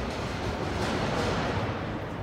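A steady rush of distant city traffic noise that swells slightly about a second in.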